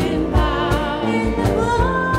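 Worship band playing a song: singing voices over strummed acoustic guitar, piano and electric bass, with a steady beat. Near the end a voice slides up and holds a long note.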